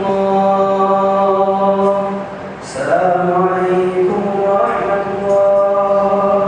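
An imam chanting in a man's voice: two long melodic phrases of held notes, with a short break about two seconds in.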